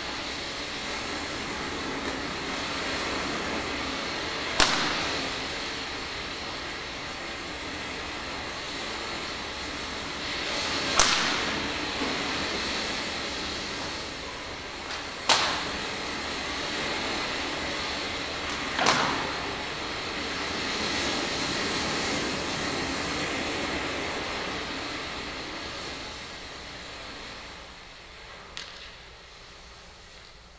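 A whip cracking as lashes are laid on: four sharp cracks a few seconds apart, then a fainter one near the end, over a steady background hiss that fades away late on.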